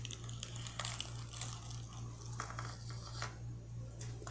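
A knife cutting into a soft, freshly set soap-based toilet block in an aluminium-foil-lined tray: faint scattered clicks and foil crinkling over a steady low hum.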